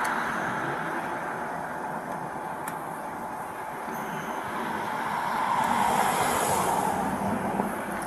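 Traffic noise from cars passing on the street. It dies away over the first few seconds, then swells again about five seconds in as another car goes by.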